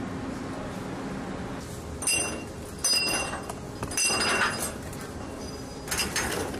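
Several ringing metal clinks, a second or so apart, starting about two seconds in: spent ammunition links being gathered by hand off a ship's steel deck. A steady low hum runs underneath.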